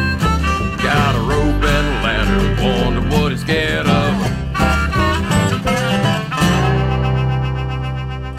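Instrumental ending of a country song on harmonica, guitars, dobro and bass, with bending, sliding notes. About six seconds in, the band lands on a final held chord that starts to fade out.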